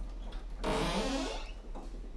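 A man's brief breathy exhalation, voiced and falling in pitch, about half a second in, after a few faint clicks.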